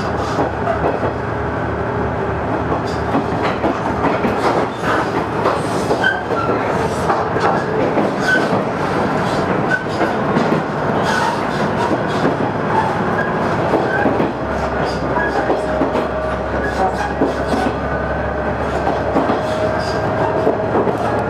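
Cabin noise inside a moving diesel railcar: the steady running of wheels on rail under a low engine hum, with irregular clicks over the track. The low hum shifts in tone about two thirds of the way through.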